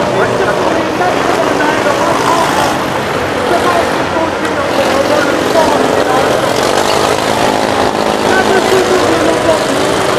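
Several small stock-car engines running together and revving up and down, with voices over them.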